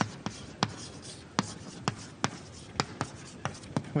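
Chalk writing on a blackboard: a faint scratchy hiss broken by sharp, irregular taps as the chalk strikes the board, about ten in all.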